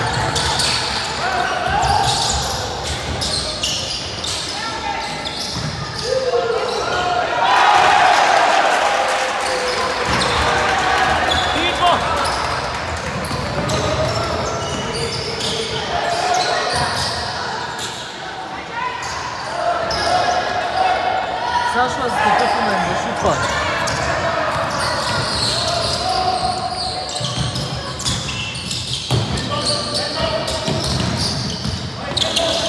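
Basketball game in a large indoor hall: a ball bouncing repeatedly on the hardwood court as players dribble, with voices of players and spectators echoing throughout.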